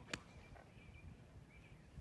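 A single sharp click just after the start, then near silence with faint bird chirps.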